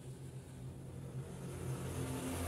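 A steady low hum, like a motor running in the background, with no other clear sound over it.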